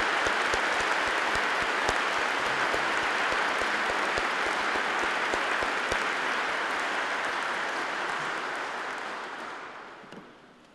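Congregation applauding steadily, the acclamation that follows the bishop's choosing of the candidates for priesthood; the clapping dies away over the last two seconds.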